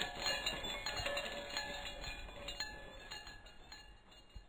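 Outro sting for an animated end card: a run of struck, ringing tones at uneven intervals, loudest at the start and fading away.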